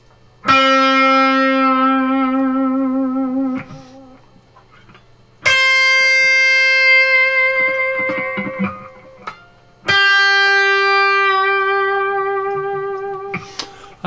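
Electric guitar playing three single sustained notes, each picked with the string already pre-bent by the first finger, then held with slow vibrato so the pitch wavers. The notes start about half a second, five seconds and ten seconds in, and each rings for several seconds before fading.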